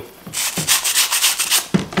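Metal wire brush scrubbing a clogged sanding disc on an orbital sander's pad, quick scratchy back-and-forth strokes several times a second, brushing the packed dust out of the worn paper so it cuts again.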